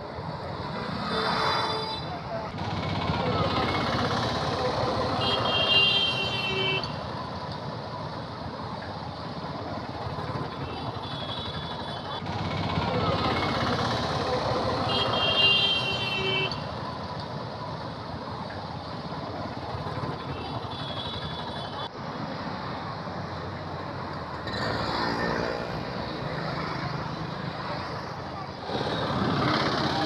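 Busy street traffic: motorcycles and auto-rickshaws running past, with vehicle horns sounding several times over the steady road noise.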